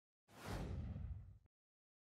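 A whoosh sound effect for an animated logo, about a second long: a bright hiss that fades over a low rumble, then stops.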